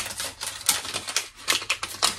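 Small kraft-paper gift bag being opened by hand: irregular crackling and rustling of stiff paper, with a few sharper crackles.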